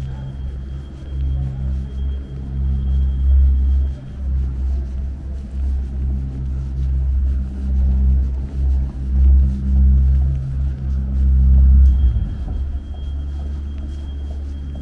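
Low rumble of city street traffic, with a vehicle engine running close by at a steady pitch, swelling and easing; the engine sound thins out near the end.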